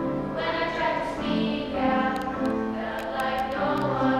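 A group of young students singing together as a choir, in long held notes.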